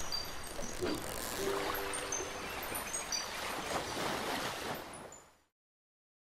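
Beach-ambience sound effect: a steady wash like surf, with short high chirps scattered over it. It fades and stops just after five seconds in.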